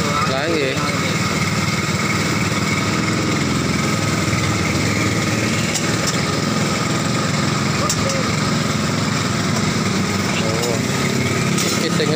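A small engine running steadily at idle, with faint voices in the background.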